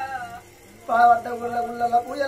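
A voice singing in Oggu Katha folk-narrative style: a gliding sung phrase ends, there is a short pause about half a second in, then one long held note.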